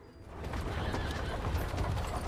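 Horse-drawn cart on the move: a horse whinnying and its hooves clopping over a low rumble of the rolling cart, fading in about half a second in.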